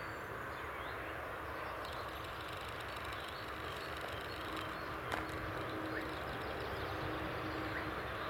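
Steady outdoor background noise with a faint constant hum and a soft click about five seconds in.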